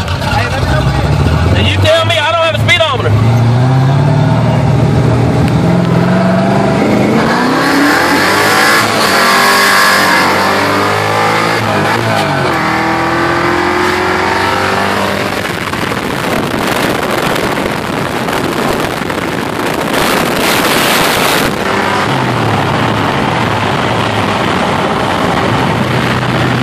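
Ford Mustang V8 at full throttle from a roll, heard from inside the cabin. The engine note climbs steadily for the first several seconds, drops at a gear change and climbs again, with wind and road noise building at speed.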